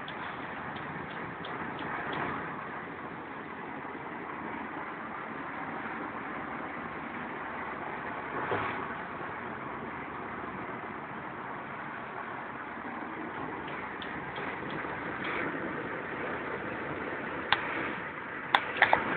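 Steady road and engine noise heard from inside a moving car's cabin, with a brief louder swell about halfway through and a sharp click near the end.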